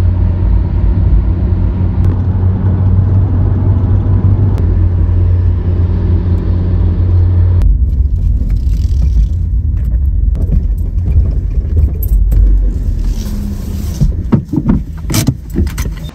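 Low, steady engine and road drone heard from inside a moving car's cabin. The sound changes abruptly about eight seconds in, and a few clicks and rattles come near the end.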